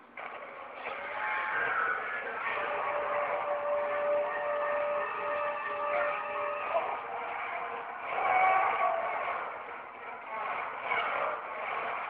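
Movie soundtrack of a monster fight scene played from a TV and recorded off the screen: a dense, muffled mix of creature and action sound effects, with a steady held tone for a few seconds in the middle and a louder swell near the two-thirds mark.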